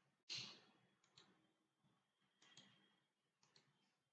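Near silence with a few faint computer mouse clicks and one short soft puff of noise just after the start.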